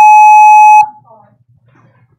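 Electronic timer buzzer: one loud, steady high-pitched beep that cuts off sharply just under a second in, signalling that a speaker's time limit has run out.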